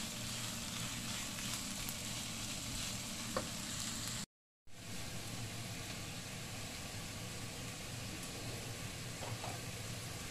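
Bacon and diced onion sizzling in a nonstick frying pan as a spatula stirs them, with one sharp tap about three and a half seconds in. The sound drops out for a moment just before five seconds, then a steady hiss follows from a pot of spaghetti at the boil.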